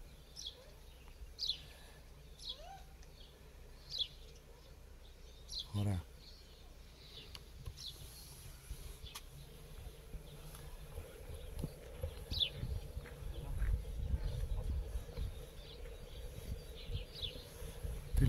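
Small birds giving short, high, falling chirps every few seconds. A low rumble on the microphone grows in the second half, and a brief voice cuts in about six seconds in.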